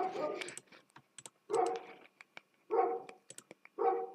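A dog barking, four barks a little over a second apart, with computer mouse clicks between them.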